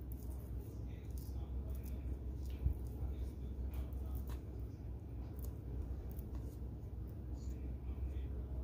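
Spatula scraping ground meat mixture off a stand mixer's flat beater in a stainless steel bowl: faint soft scrapes and squishes with a few light ticks, over a steady low hum.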